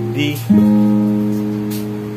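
Acoustic guitar with a capo: the previous chord rings out, then a D chord is strummed once about half a second in and left to ring, slowly fading.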